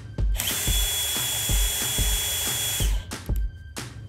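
Hilti Nuron SIW 8-22 cordless impact wrench running with no load for about two and a half seconds, with a steady high motor whine, starting and stopping sharply. Background music with a steady beat plays under it.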